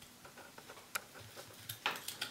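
Small carving knife cutting notches into a wooden stick against saw cuts: faint short clicks of the blade in the wood, then a louder slicing scrape near the end.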